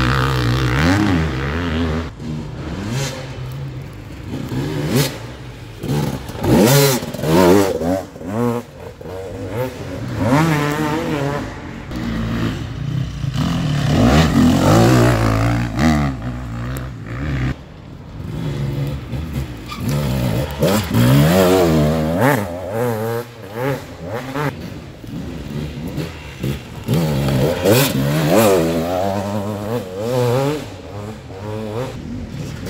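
Enduro motorcycles revving hard as they ride past one after another, engine pitch rising and falling repeatedly under throttle.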